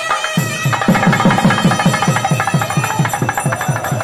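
Thavil barrel drum beating a fast, even rhythm of about four strokes a second, picking up again about half a second in after a brief break, with a nadaswaram pipe playing over it.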